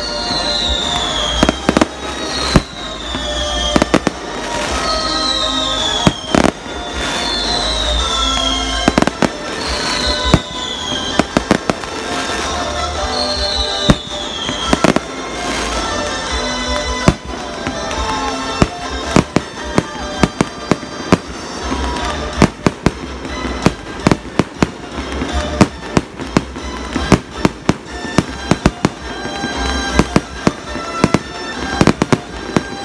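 Aerial fireworks going off: a rapid string of sharp bangs and crackles that comes thicker in the second half, with music underneath.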